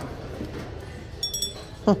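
Green art-glass bell clinking as it is lifted and tipped, its crystal-drop clapper striking the glass: a few short, high rings about a second in.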